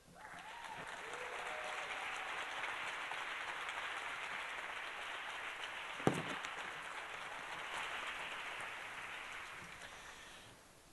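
Audience applauding, starting at once and tapering off near the end, with a single sharp knock about six seconds in.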